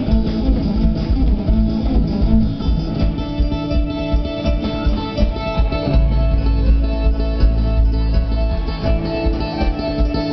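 Live band music without vocals: strummed and plucked strings over heavy bass, with a steady beat.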